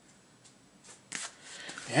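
Faint handling noise from a plastic comic book display panel holding a bagged and boarded comic: a few light ticks and soft rustles, growing a little louder near the end.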